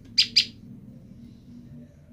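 Female common tailorbird calling to its separated mate: two short, sharp, high chip notes in quick succession just after the start.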